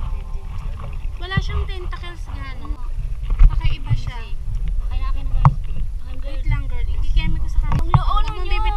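Indistinct voices chatting over a steady low rumble, with a few sharp knocks, heard from a small boat on a lagoon.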